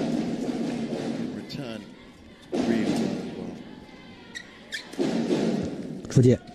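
Arena crowd voices swelling in three bursts during a badminton rally, with a few sharp racket strikes on the shuttlecock.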